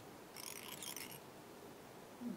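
Brief faint scratchy rustle, under a second long, of fingers handling a foam strip and tying thread on a hook in a fly-tying vise.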